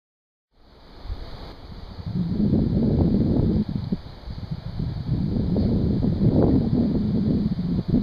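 Dead silence for about half a second at a cut, then wind buffeting the microphone, swelling and easing in gusts, over a steady high hiss.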